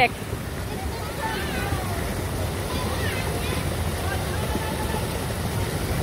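Steady rushing of a shallow stream of water running down a channel and splashing through a metal drain grate, with faint voices in the background.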